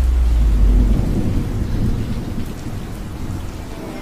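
Steady heavy rain with a low rumble of thunder in the first second that fades away.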